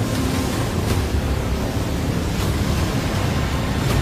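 Movie trailer soundtrack: a steady rush of churning ocean water over a deep rumble, with music underneath.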